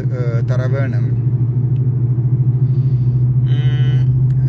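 Steady low vehicle rumble, the loudest sound throughout, with a man's voice in the first second and a brief pitched sound near the end.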